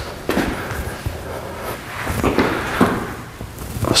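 Footsteps and a few separate soft knocks and thuds as a man carrying a pair of dumbbells walks to a flat weight bench, sits down and lies back into position for a dumbbell chest press.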